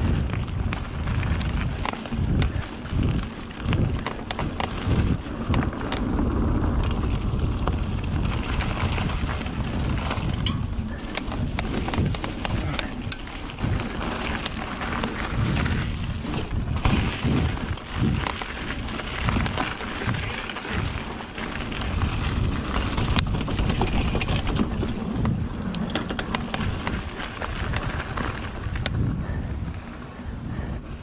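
Mountain bike ridden fast down a dirt forest trail: a continuous rumble of tyres and frame over the ground, with frequent knocks and rattles as it goes over roots and bumps. A few short high squeaks come and go.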